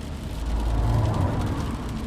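Car sound effect: a low engine and road rumble that swells about half a second in and then holds steady.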